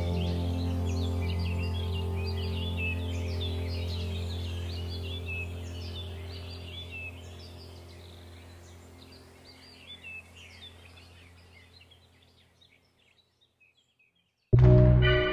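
Held ambient meditation-music chord over a deep bass drone, fading slowly to near silence by the end, with birdsong chirping above it that fades with it.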